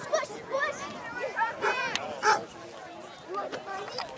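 Scattered calls and shouts of players and spectators across an open soccer field, with a dog barking a few times in the middle.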